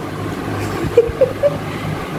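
A steady low mechanical hum, with a few short voice sounds in the middle.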